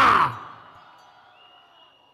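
A voice's long held note, falling in pitch, dies away in the first moment. It leaves a low background with a faint thin high tone near the end.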